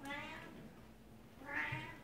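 Devon Rex cat meowing twice: a short call right at the start and a louder one about a second and a half in.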